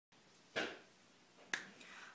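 Two sharp clicks about a second apart, the first trailing off briefly.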